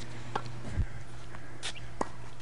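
A few faint tennis-ball knocks, the ball struck and bouncing on a hard court, over a steady low hum.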